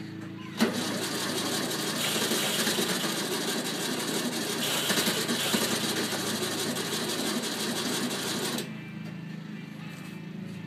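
1964 Volkswagen Beetle's air-cooled flat-four engine catching for the first time after more than ten years in storage. It starts suddenly less than a second in, runs with a fast, rattly beat for about eight seconds, then stops.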